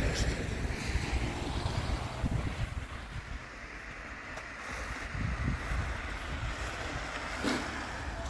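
Car tyres hissing through wet slush as traffic passes on a snowy street, swelling and fading, with wind rumbling on the microphone.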